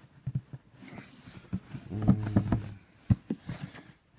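Cardboard shoebox being handled and worked open with one hand: a series of knocks and taps of the lid and box, with a brief low vocal hum about two seconds in.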